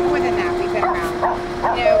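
Sound collage: long, steady synthesizer tones held under short yips from a dog, with voices mixed in.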